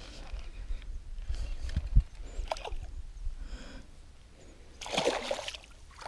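A large hooked fish splashing and thrashing at the water's surface close to the boat while being played on a rod, with the loudest splash about five seconds in. A single sharp knock comes about two seconds in.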